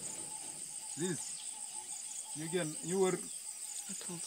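A steady, high-pitched chorus of insects that runs on without a break.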